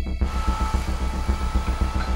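A low, steady rumbling drone with faint thin high tones over it, typical of a horror trailer's sound design. A rapid pulsing at the very start stops about a quarter second in.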